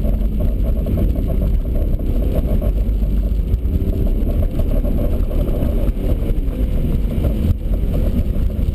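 Engine of a BMW E36 3 Series driven hard through an autocross course, heard from inside the cabin. Its level stays high and steady apart from a brief dip near the end.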